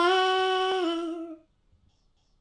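A single high voice singing unaccompanied, holding one long note that steps down in pitch partway through and ends about a second and a half in.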